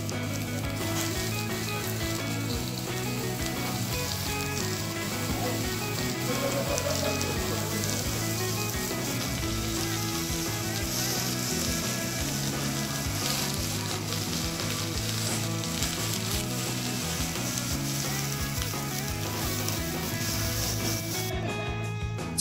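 Sliced lamb and fat sizzling steadily on a hot domed iron grill pan, with background music underneath.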